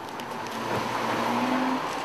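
A car passing by: a steady rushing noise that swells and then eases, with a faint engine hum in the middle.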